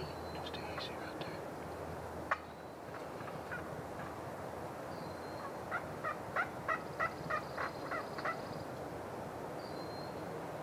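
Wild turkey gobbling: one rattling gobble of about ten quick notes, lasting a little over two seconds, past the middle. A single sharp click about two seconds in.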